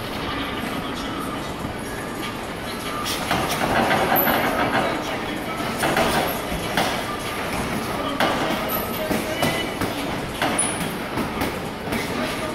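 Boxing sparring in a ring: gloves landing and feet moving on the canvas, many short knocks over a steady noisy background, with a few brief high squeaks like sneaker soles.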